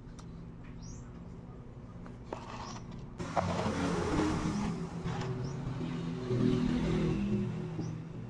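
A motor vehicle's engine passing by: a steady low engine sound grows suddenly louder about three seconds in, stays loud for a few seconds, and fades near the end.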